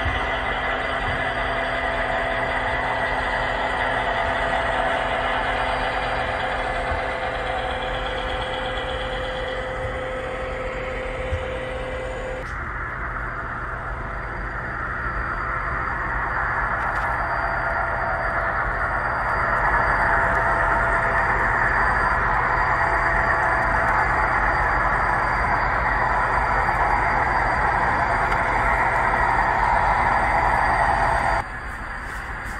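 Steady drone of model SD40-2 and SD45 diesel locomotives running, with the train rolling on the track. The sound changes abruptly about twelve seconds in and grows a little louder about nineteen seconds in.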